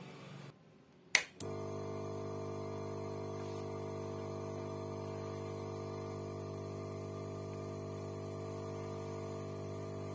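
A sharp click about a second in, then the Quick 850A rework station's air pump starts and hums steadily. The air preset has been turned down, but this has not much reduced the flow.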